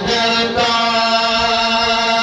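A man chanting a Pashto naat, unaccompanied, into a microphone, holding one long sustained note.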